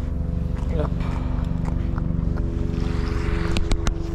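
A motorboat engine running steadily with an even low hum, and a few sharp clicks near the end.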